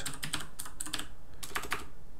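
Computer keyboard being typed on: a handful of separate, irregularly spaced keystrokes.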